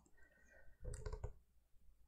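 Faint clicking, with the loudest cluster about a second in.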